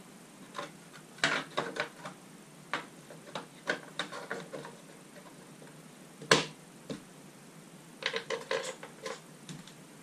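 Clicks, taps and knocks of roof rail parts and hardware being handled and fitted onto a Ford Bronco's hardtop, coming in small clusters, with one sharper knock about six seconds in.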